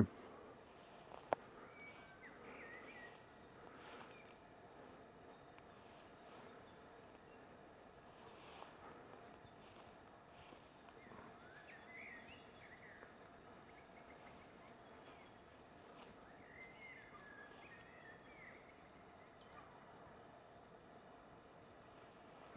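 Very quiet outdoor background with faint, scattered bird calls: short chirps about two seconds in, rising warbling calls around the middle and again later. One sharp click about a second in.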